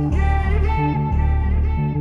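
Instrumental intro of a pop-rock song: guitar over a steady repeating bass line, with no vocals yet.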